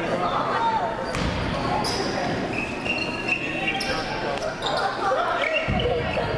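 Voices of players, coaches and spectators calling out during play in an echoing indoor box lacrosse arena, with two dull thumps, about a second in and near the end.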